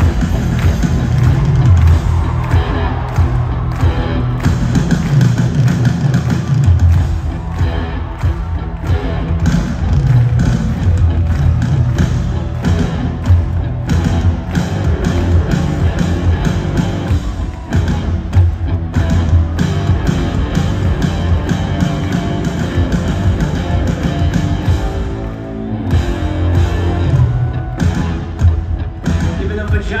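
Live rock band playing through an arena PA, recorded from the crowd: a steady drum beat over heavy bass and synths, with a short drop in the music about 25 seconds in.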